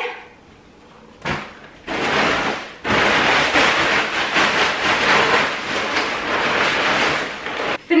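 Rustling and scraping of a fabric storage bag being dragged off the bundled branches of an artificial Christmas tree: a brief rustle about a second in, then steady, loud rustling from about three seconds in until near the end.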